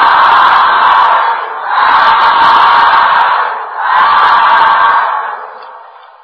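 A group of monks calling out "sādhu" together three times, each call a long held shout of about a second and a half, the traditional response of assent at the end of a Dhamma talk.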